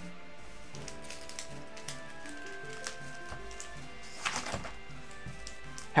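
Soft background music of held, sustained notes, with a short burst of crinkling from booster packs being handled a little past four seconds in.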